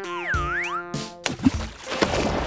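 Cartoon sound effect: a springy, boing-like tone that swoops down in pitch and back up, over light children's background music. Near the end a sharp click leads into a rushing noise.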